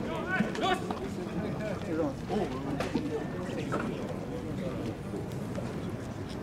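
People's voices talking in the background, no single speaker standing out, over outdoor background noise.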